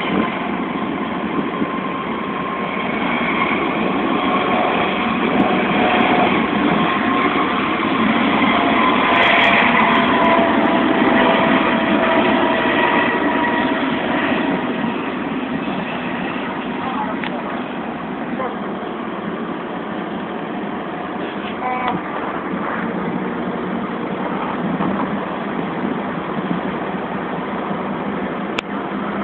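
A helicopter flying close by, its engine and rotor noise loudest around ten seconds in and then easing off, over the steady machinery noise of an offshore production platform.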